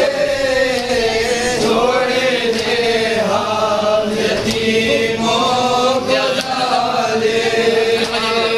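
A group of men chanting a noha, a Shia mourning lament, together in long, slowly bending held phrases.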